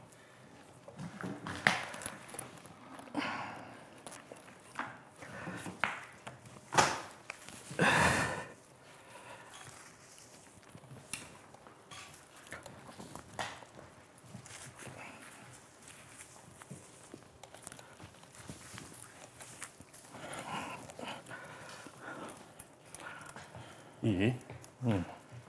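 Scattered handling noises as hands work structural wire through pine branches: sharp little clicks, brief scrapes and rustles of needles, irregularly spaced, with a longer rustle about eight seconds in.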